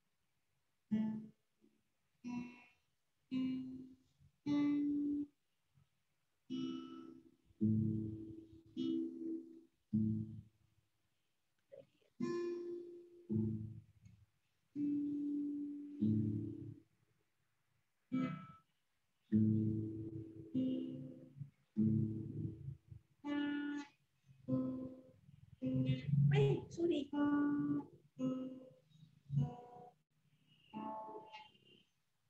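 Acoustic guitar playing a simple piece of single notes and chords, stopping and starting in short phrases. Heard over a video call, it cuts out abruptly to silence between phrases.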